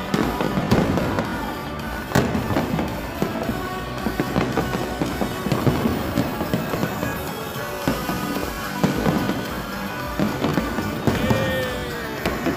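Aerial fireworks shells bursting and crackling in rapid, continuous succession, with a sharp louder bang near the start and another about two seconds in, over music playing throughout.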